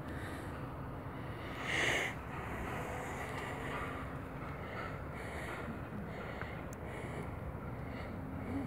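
Steady low background hiss, with one short breath sound from a person about two seconds in.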